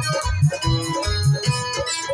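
Live band playing an instrumental passage: an electronic keyboard melody over a steady drum beat.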